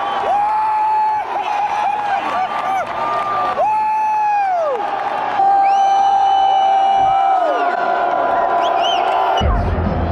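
Stadium crowd cheering, with fans close by yelling long held shouts that fall away at the end, one after another.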